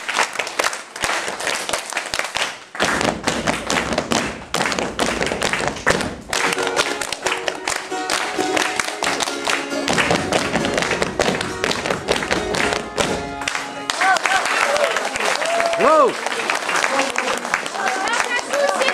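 A group clapping hands in a quick rhythm while voices sing a Russian folk dance song, with a voice gliding up and down near the end.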